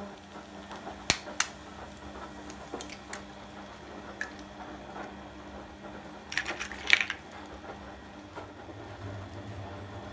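An egg cracked into a frying pan of vegetables: a couple of sharp taps about a second in, and a louder cluster of clicks and knocks near seven seconds, over a steady low hum.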